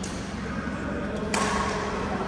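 A badminton racket hits the shuttlecock once, a sharp crack a little over a second in that rings briefly in the hall, over a steady background hum.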